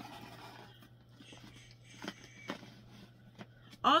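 Soft rustling and rubbing as a makeup wipe is pulled from its packet and wiped over the hands, with a few light clicks.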